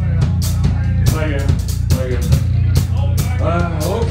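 Live rock band playing: a drum kit keeps a steady beat over a loud bass guitar, with pitched lines gliding above.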